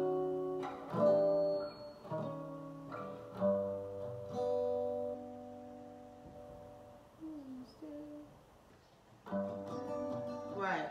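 Acoustic guitar chords strummed one at a time and left to ring, tentative trial chords while working out which key to play a song in. A few single notes with a falling slide follow, then a short pause before another chord near the end.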